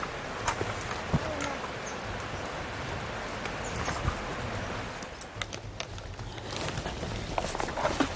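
Rustling and scraping with scattered knocks as soldiers in loaded packs haul themselves up a steep, wet forest slope on a climbing rope, their boots and gear brushing and striking rock and undergrowth.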